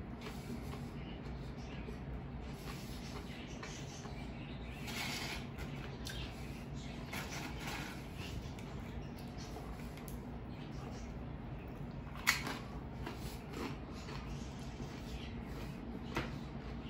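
Quiet sounds of a meal: a fork clicking against a plate and chewing, with one sharp clink about twelve seconds in, over a steady low hum.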